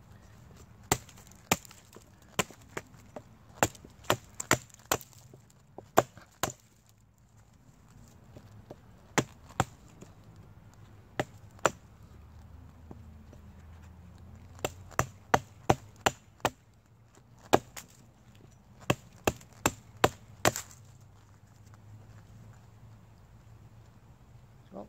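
Hatchet chopping into the side of an old, long-dead pine log, testing its resin-soaked fatwood: sharp strikes in irregular bursts, with pauses of a second or two between groups.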